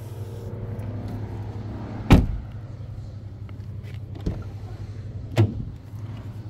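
A car door shutting with one loud thump about two seconds in, followed by two lighter knocks as the next door is handled, over a steady low hum.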